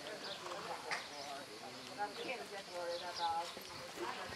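A horse's hoofbeats on sand arena footing as it is ridden, with sharper knocks about one and two seconds in. A person's voice sounds in the background in the second half.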